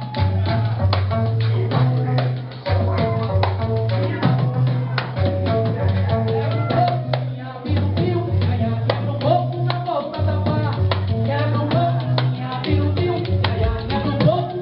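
Live ragga-côco music played loud: a repeating heavy bass line and busy drum beat, with a voice singing or chanting over it.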